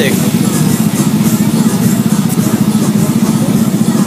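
A steady, loud low rumble with faint voices of people in the background.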